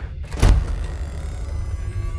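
A single sudden deep boom about half a second in, a trailer-style impact hit, its tail dying away into a low rumbling drone of eerie music.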